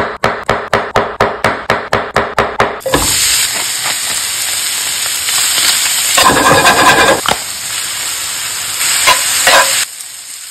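A knife slicing through a firm green vegetable on an end-grain wooden cutting board in quick, even strokes, about five a second. After about three seconds this gives way to shredded chicken sizzling in a frying pan while a metal spatula scrapes and stirs it, with louder scraping a little past the middle and again near the end.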